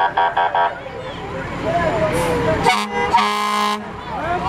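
Fire engine sounding its siren in short rapid pulses, then a brief toot on its air horn followed by a longer blast near the end. Children's voices and shouts are heard in between.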